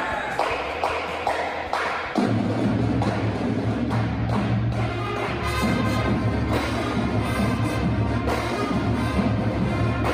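High school marching band playing in a gymnasium. It opens with a few sharp percussion hits, and about two seconds in the full band comes in, brass over a strong, steady low bass line.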